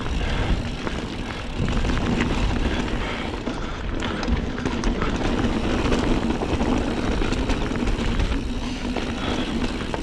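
Mountain bike rolling down a dirt singletrack and over rock slabs: knobby tyres running on dirt and stone and the bike rattling, under a steady low rumble of wind on the rider's chest-mounted microphone.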